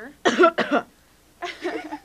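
A person coughs: one loud, rough cough a moment in, then a shorter, softer vocal sound near the end.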